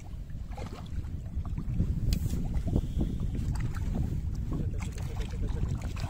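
A hooked carp thrashing and splashing at the water's surface close to the bank as it is played in on the line, in short irregular splashes over a steady low rumble of wind on the microphone.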